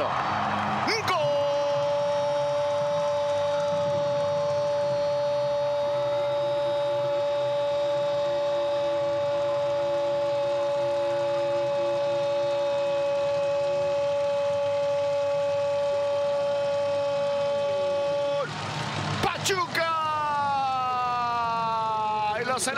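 A Spanish-language TV football commentator's long 'gol' cry: one note held steady for about seventeen seconds, then breaking off into further shouts that fall in pitch near the end.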